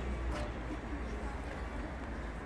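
Indistinct murmur of people talking nearby, over a steady low rumble on the microphone.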